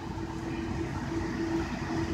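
Steady low mechanical hum with a faint constant pitched tone running through it.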